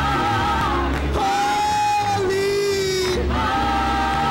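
Gospel mass choir and lead singer singing long held notes over a steady instrumental bass accompaniment.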